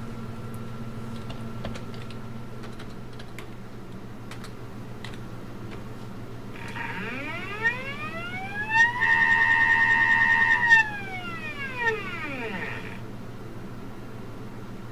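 Stepper motor of a homemade coil winder spinning its drill-chuck spindle: a whine that rises in pitch over about two seconds as the motor ramps up to speed, holds a steady high note for about two seconds, then falls back as it slows to a stop. A low steady hum runs underneath.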